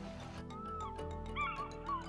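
Background music of steady held notes, over which an African fish eagle gives a few short yelping calls that rise and fall in pitch, starting about half a second in.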